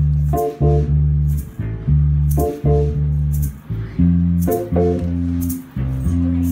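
Band playing an instrumental song intro: bass guitar and held chords over a drum kit beat, with regular cymbal hits.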